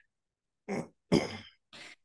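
A person clearing their throat: a short cough-like burst, then a louder one about a second in.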